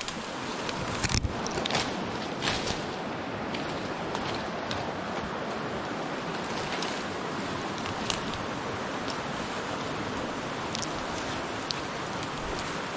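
Steady rush of river water flowing below a log footbridge, with a few brief snaps and rustles of brush and footsteps while crossing.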